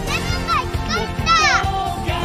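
A boy shouting excitedly in a high voice, several rising-and-falling calls of joy, over background music.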